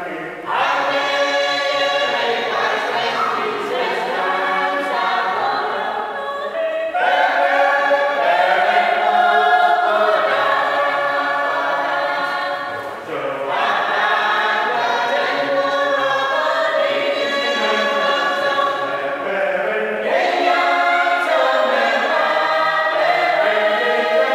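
A group of men and women singing a hymn together in several parts, in long phrases with a short breath between them about every six to seven seconds.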